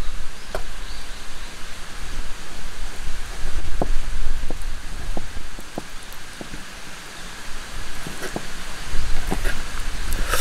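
Steady rushing outdoor noise, with a scattering of short ticks from an Opinel stainless folding knife slicing raw salmon on a wooden plate.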